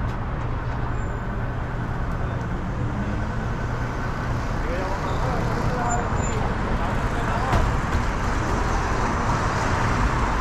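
City traffic noise around a car stopped at an intersection: a steady low engine hum under the wash of surrounding vehicles, getting a little louder in the second half.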